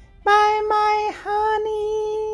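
A high singing voice holding two long notes at nearly the same pitch, starting about a quarter second in with a brief break between them: a short sung sign-off.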